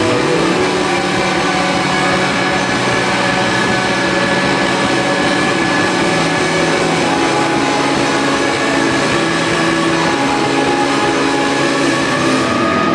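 Live rock band holding a loud, sustained drone: electric guitars, bass and keyboard sustain steady notes in a dense wall of sound over a fast, even low pulse, with no breaks.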